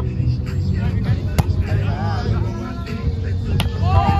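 Two sharp hits of a volleyball, about two seconds apart, the second near the end, over steady background music and faint voices.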